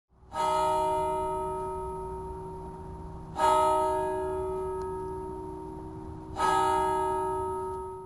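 A bell struck three times about three seconds apart, sounding the same note each time, each stroke ringing on and slowly fading.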